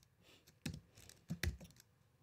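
Computer keyboard typing: a handful of faint, separate keystrokes, the clearest about two-thirds of a second and a second and a half in.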